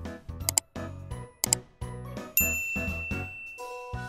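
Background music with a steady beat, overlaid with subscribe-button animation sound effects. Two sharp clicks come about half a second and a second and a half in, then a bright bell-like ding rings from about two and a half seconds in.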